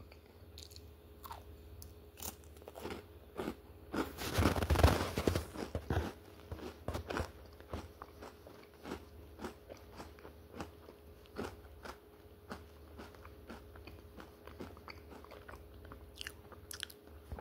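Close-up chewing of a crunchy ice cream cone: a string of crisp crunches, densest and loudest about four to six seconds in, then sparser bites.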